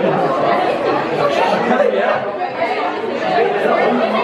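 Crowd chatter: many people talking over one another at once, steady throughout.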